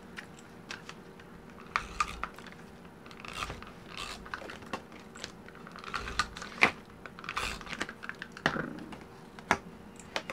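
Paper handling at a desk: a glue tape runner rolled across the back of a card and the card pressed and rubbed onto a journal page. Short swishes mixed with scattered sharp clicks and taps.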